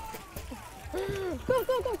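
Water sloshing and splashing as a small dog paddles in a pool, with a woman calling it in twice ("kom, kom") from about a second in.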